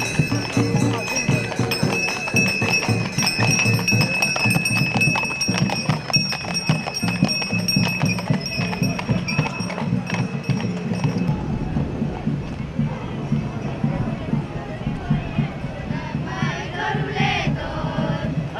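Live folk fiddle music in a street parade, mixed with horses' hooves clopping on the asphalt. Held high notes run through the first half and drop out about halfway, and crowd voices come up near the end.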